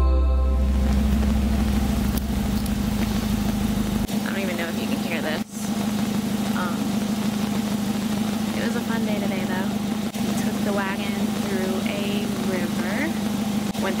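Background music fading out over the first few seconds, then a steady low hum like an idling car engine, with faint warbling pitched sounds over it from about four seconds in.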